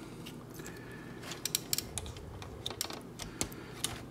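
Light, irregular clicks and taps of hard plastic as blasters are pegged onto the arms of a plastic transforming robot action figure.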